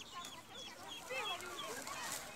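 Birds calling: a run of short, high chirps repeating about four times a second, with lower, wavering calls about a second in.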